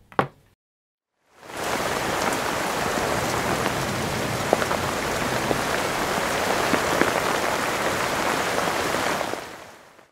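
Steady rain-like hiss with scattered faint crackles, fading in over about a second after a brief silence and fading out near the end.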